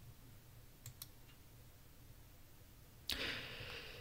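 Quiet room tone with two faint computer-mouse clicks about a second in, as the presentation slide is changed. Near the end, a short breathy rush of noise, a man drawing breath.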